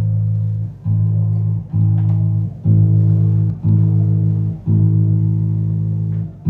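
The A string of a five-string electric bass plucked repeatedly: six notes at the same low pitch, about one a second, each ringing with a short break before the next.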